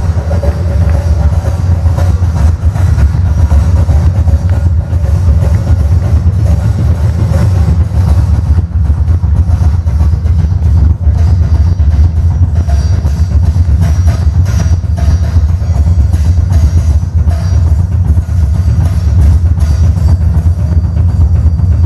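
Heavy metal drum kit solo played live and loud: a continuous low rumble of fast double bass drum strokes, with cymbal and tom hits over it.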